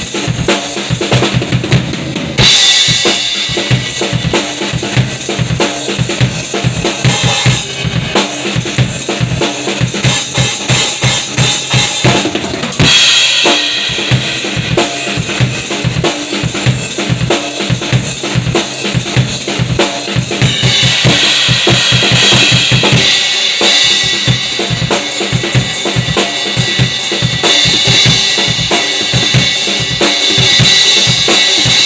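Acoustic drum kit being played continuously: a busy bass drum and snare groove, with loud cymbal washes coming in a few seconds in, again near the middle, and through the last third.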